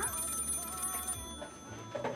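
A telephone ringing: a bright, steady electronic ring that cuts off about a second in, followed by fainter wavering tones.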